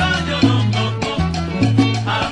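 Charanga salsa band playing an instrumental passage: a bass line moving in short notes under steady Latin percussion, with no singing.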